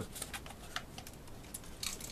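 Faint, scattered clicks and light rattling of handling as the plastic hull top of an RC tank is picked up out of a plastic tub.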